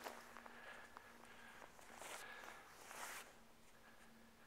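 Near silence, with a faint steady hum and two brief, soft rustling sounds about two and three seconds in.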